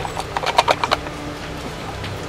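Stir stick tapping and scraping against the sides of a plastic mixing cup while epoxy resin and hardener are mixed: a quick run of ticks that stops about a second in.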